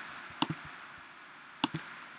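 Two mouse clicks about a second apart, over a faint steady hiss of room tone.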